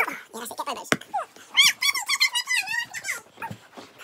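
Young children squealing and giggling in high, wavering cries, with a fast shaky laugh in the middle. A single sharp knock comes just before one second in.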